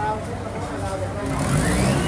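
Background voices of people talking, with a motor running and rising in pitch during the second half, loudest near the end.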